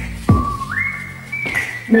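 The whistled hook of a pop song: a held whistle note that slides up to a higher note partway through, over a sparse beat with one heavy bass drum hit a little after the start.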